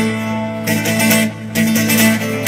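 Acoustic guitar strumming chords in a live song, several strokes in quick succession with the chords ringing between them and no voice.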